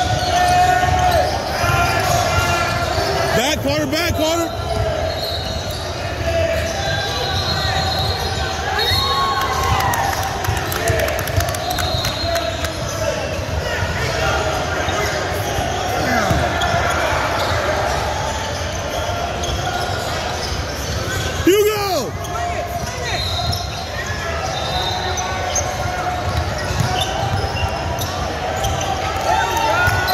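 Basketball game on a hardwood gym court: the ball bouncing, with the voices of players and spectators carrying around a large echoing hall. A brief louder sound stands out about two-thirds of the way through.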